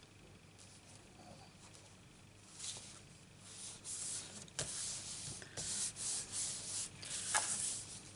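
Hands rubbing and smoothing patterned paper flat onto a cardstock card base: paper sliding and rustling in repeated bursts that start about two and a half seconds in, with a couple of sharp taps.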